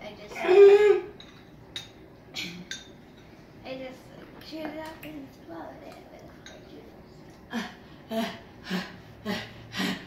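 Children reacting to the burn of hot sauce: a short, loud vocal outburst about half a second in, then scattered mouth and breath sounds. Near the end comes rapid, rhythmic panting, a breath about every half second, to cool the mouth from the spice.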